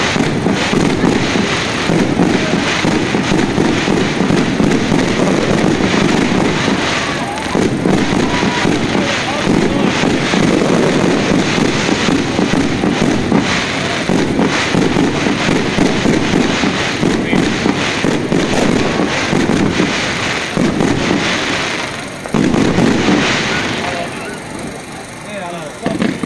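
Aerial fireworks going off in a dense, continuous barrage of bangs and quick crackling pops, with a brief lull near the end before another volley.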